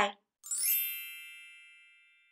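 A bright chime sound effect: one shimmering ding about half a second in, with a quick upward sparkle at its start, ringing out and fading away over about a second and a half.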